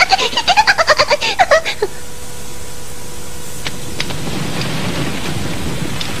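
A cartoon character's rapid, high giggling snicker for the first couple of seconds. Then a small fire of dry seaweed burns with a steady hiss and a couple of sharp crackles.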